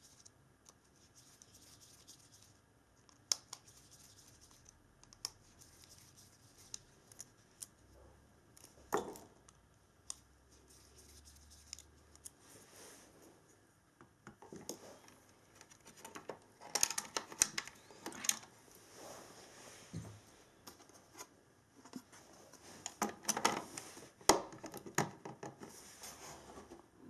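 Handling noise from small electronics work: light clicks, scratches and rustles of circuit boards, wires and a small screwdriver, with denser runs of plastic clicks and rattles past the middle and again near the end as a black plastic enclosure and its slotted cover are handled and pressed together.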